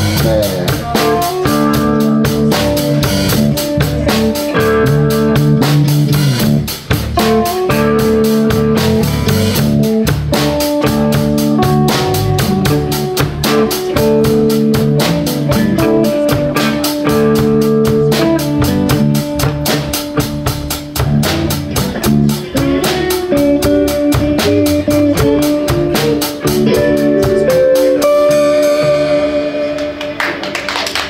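Live electric blues band playing: electric guitars and bass guitar over a steady drum-kit beat. Near the end the drums stop and the band ends the song on a ringing held chord.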